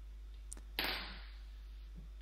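A faint click, then a short rustling swish of braided rope being pulled and worked between the hands, over a steady low hum.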